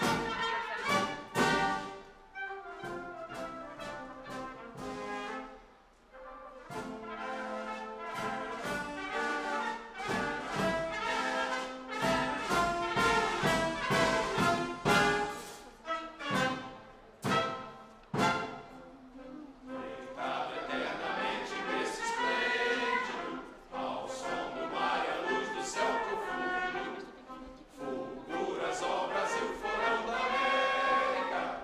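An anthem performed by an orchestra with prominent brass and a choir. About twenty seconds in, the choir comes further forward.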